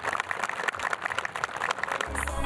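Audience applauding: a dense, irregular patter of many hands clapping.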